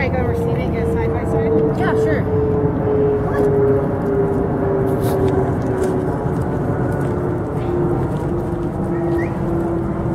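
A steady machine hum whose clear tone slowly sinks in pitch, over a continuous low rumble, with scattered light clicks and scuffs.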